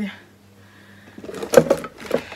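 Close-up handling noise from the recording camera being picked up and moved: a quiet second, then a short cluster of rubbing and knocking sounds with one loud knock about a second and a half in.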